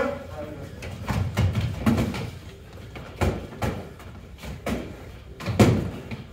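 Foam-padded LARP swords and clubs hitting shields and bodies in a sparring bout: a quick, irregular series of dull thuds and knocks, with the loudest hit near the end.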